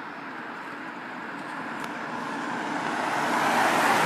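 A car approaching along the road, its tyre and engine noise growing steadily louder and peaking near the end.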